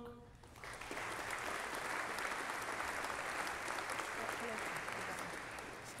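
Audience applauding, starting about a second in and holding steady, for a graduate who has just been called to cross the stage.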